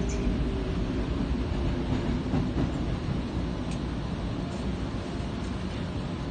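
Interior noise of a Tokyo Metro Marunouchi Line train running: a steady low rumble of wheels and motors, easing a little as the train nears the station.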